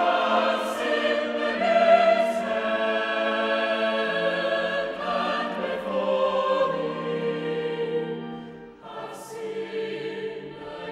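Choir singing a slow anthem in sustained chords, with sung 's' consonants cutting through. The phrase dies away about nine seconds in and a new one begins.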